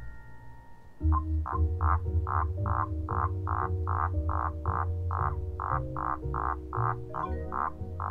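Male common toad calling: a rapid series of short croaks, about three a second, starting about a second in. It sounds over a music bed of sustained low chords.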